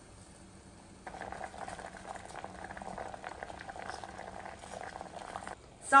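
Water bubbling and crackling as it boils in a steel pot with chopped vegetable pieces. It starts about a second in and stops shortly before the end.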